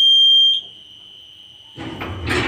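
KMZ passenger lift's arrival signal: one loud, steady, high-pitched beep lasting about half a second as the car reaches the floor. Near the end the automatic sliding doors start to open.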